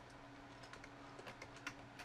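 Computer keyboard typing: a short run of faint, irregular keystrokes as a word is typed.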